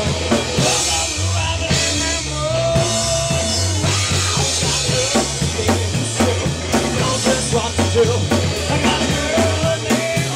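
Live rock band playing loudly: a Tama drum kit with busy bass drum, snare and cymbal hits over bass and electric guitar.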